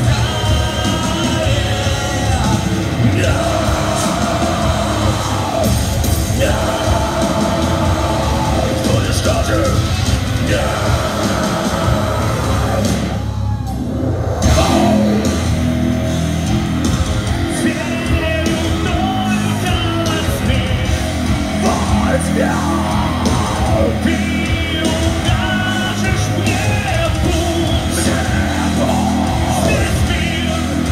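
Live heavy rock band playing loud, with electric guitars, bass, drums and a singing lead vocal, heard through a club PA from within the crowd. About halfway the sound briefly thins out, then the full band comes back in.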